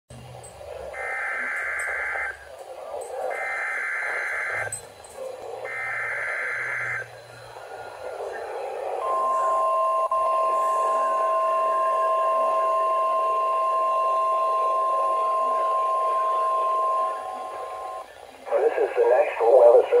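A Midland weather alert radio's speaker sounding a NOAA Weather Radio Required Weekly Test: three identical bursts of the S.A.M.E. digital header, each just over a second long and about a second apart, then after a short gap the steady 1050 Hz warning alarm tone for about eight seconds, all over a bed of radio hiss. A voice begins the test announcement near the end.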